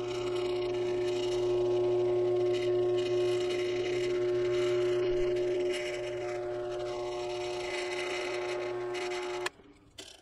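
Drill press running with a steady motor hum while drilling holes through an aluminium antenna-boom tube. The run is louder for the first half, and the hum cuts off suddenly about nine and a half seconds in when the press is switched off.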